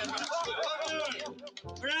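A small group of people clapping their hands and calling out 'Bravo!' in excited voices.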